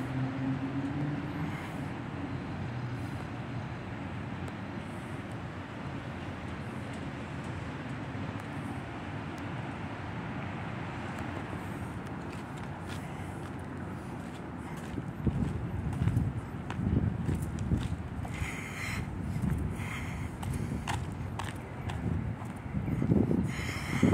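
Steady background hiss and hum. From about two-thirds of the way through come irregular low thumps and rumbles of wind buffeting and handling noise on a moving camera's microphone.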